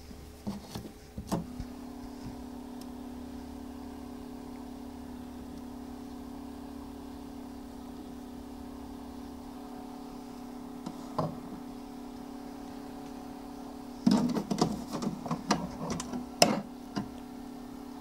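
Plastic turning rollers of a Top Hatch egg incubator being handled and pulled out, a run of clattering clicks and knocks near the end. Under it runs a steady electric hum, with a few single knocks earlier on as the eggs are lifted off the rollers.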